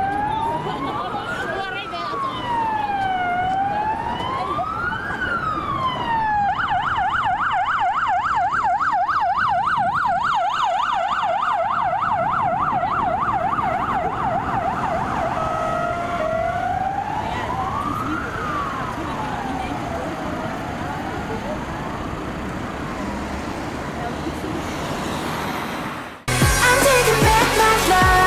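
Electronic emergency-vehicle siren going by: a slow rising-and-falling wail that switches about six seconds in to a fast yelp of about four cycles a second. About ten seconds later it returns briefly to the slow wail, then fades.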